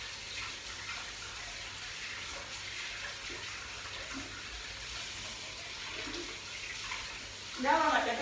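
Kitchen tap running steadily into a stainless-steel sink while dishes are washed by hand, an even hiss of water. A woman's voice comes in briefly near the end.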